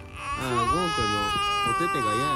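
A toddler's angry tantrum cry: one long, high wail held steady from about half a second in, over not being allowed to grab the stroller handle.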